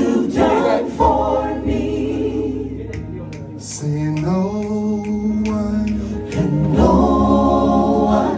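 A small group of gospel backing vocalists singing a slow worship chorus together in harmony, holding long sustained chords, the longest near the middle and again near the end.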